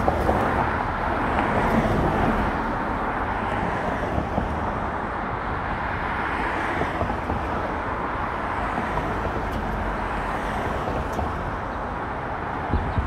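Steady road noise of a car driving at an even pace: a low tyre-and-engine rumble with no changes in speed.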